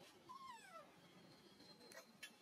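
Infant macaque giving one short, faint cry about half a second long that starts high and slides down in pitch.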